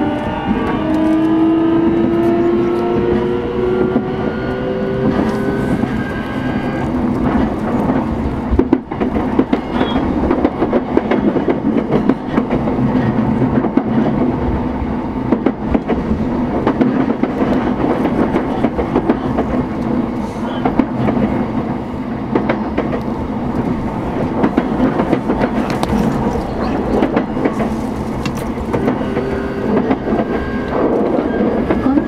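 Motor car of a JR East E233-series electric train pulling away: the traction inverter and motors whine in several rising tones for the first six or seven seconds. This gives way to steady running noise of wheels on rail with scattered clicks.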